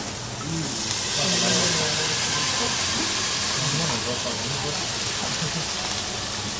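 Food sizzling on a hot cooking surface with a loud hiss of steam that swells about a second in, then holds steady.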